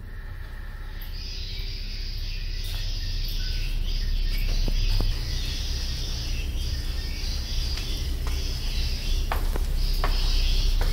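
A steady, high-pitched chorus of chirping insects starting about a second in, over a low rumble that grows louder, with a few faint clicks.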